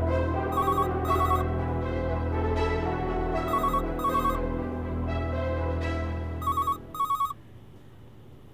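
A telephone ringing in pairs of short trills, three double rings about three seconds apart, over a background music score that stops about seven seconds in.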